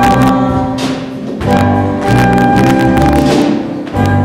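A live pit band plays an instrumental passage of a stage-musical number: sustained chords with sharp percussive hits falling several times.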